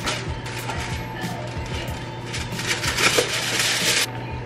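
A cardboard box being torn open and a clear plastic wrapper pulled out of it, crackling and crinkling, busier near the end, with background music underneath.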